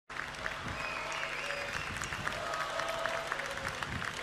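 Audience applauding steadily: a dense, even patter of many hands clapping, with a few faint voices over it.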